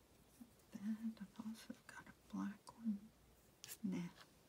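A woman's quiet, half-whispered muttering in short broken phrases, with a light click near the end.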